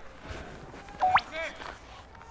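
Faint open-air ballfield background. About a second in, a short high whistle-like tone that sweeps sharply upward, followed by a brief voice call.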